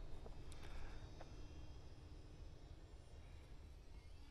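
Faint outdoor ambience with a low rumble, and a faint steady hum that fades out about halfway through.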